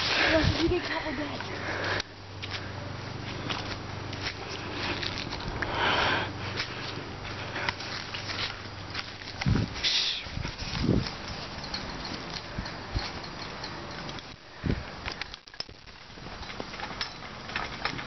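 Handling noise and rustling of leaves and branches against a handheld camera as someone pushes through bushes and climbs over a fence, with a few heavier knocks around ten seconds in.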